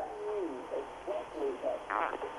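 Faint, short voice sounds over a telephone line, much quieter than the call's speech on either side.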